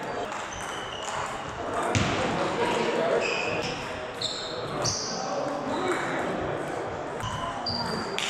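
Table tennis hall ambience: table tennis balls clicking off bats and tables, short high squeaks of shoes on the hall floor, and background voices, all echoing in a large hall.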